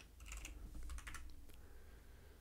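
Faint typing on a computer keyboard: a few keystrokes in two short clusters, about half a second in and again around one second in.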